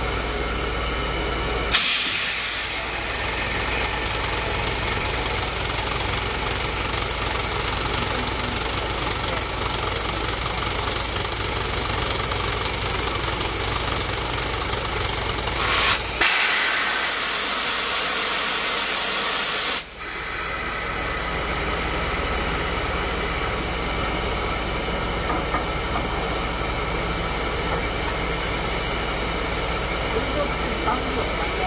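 Steam hissing from the standing B6 tank locomotive No. 2109 (built by Dübs). The hiss grows sharply louder about two seconds in. A louder, higher hiss of steam runs for about four seconds near the middle and cuts off suddenly.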